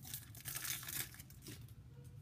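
Foil wrapper of a Pokémon trading card booster pack crinkling and tearing as it is pulled open, dense crackling through about the first second, then fading to quieter handling.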